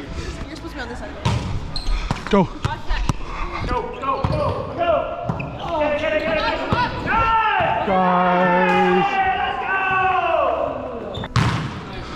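A volleyball bouncing on a hardwood gym floor, a few sharp slaps in the first seconds, with players' voices ringing around the hall through the second half.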